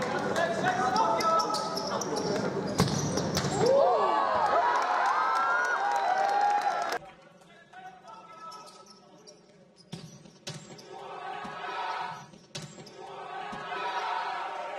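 Futsal match in a sports hall: the ball being struck on the court and players calling out, echoing in the hall. About seven seconds in it drops much quieter, leaving a few sharp ball strikes and a swell of noise near the end.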